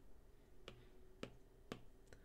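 Faint stylus taps on a tablet screen, three sharp ticks about half a second apart, as a handwritten expression is copied and pasted in a note app.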